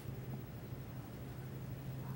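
Quiet room tone with a steady low hum and faint hiss; no distinct events.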